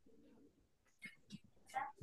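Near silence: room tone, broken by a few faint, brief sounds in the second half.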